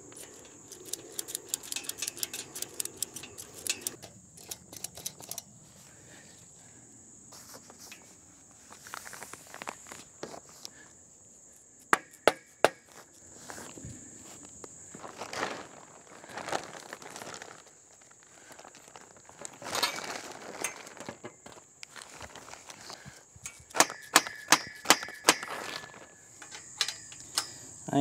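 Small ratchet-strap buckles being worked to tighten the fabric end covers of a portable garage: runs of quick clicks near the start and again near the end, with scattered sharp clicks and knocks between them.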